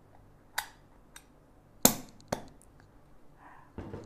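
Stainless-steel blind filter basket being fitted into an espresso machine portafilter: a few sharp metallic clicks, the loudest about two seconds in.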